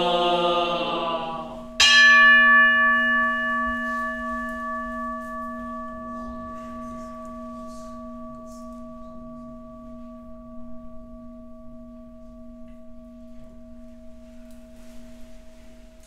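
Voices chanting the end of the dedication, then, about two seconds in, a single strike on a large bowl-shaped temple bell (kin) that rings on with several steady tones, slowly fading. The strike closes the chanting and signals the general bow.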